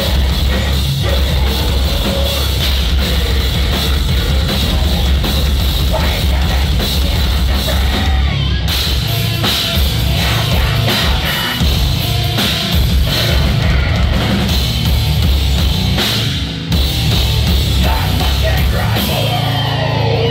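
Heavy metal band playing live: distorted electric guitar over a drum kit, loud and dense, with a brief dip about sixteen seconds in.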